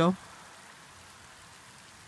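The end of a spoken word, then a faint, steady hiss of outdoor background noise with no distinct events.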